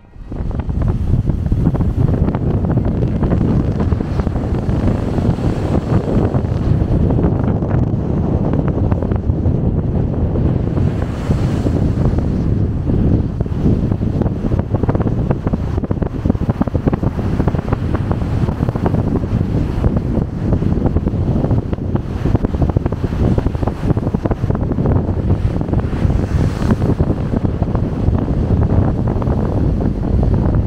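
Wind buffeting the microphone over the steady rush of a cruise ship's churning wake below.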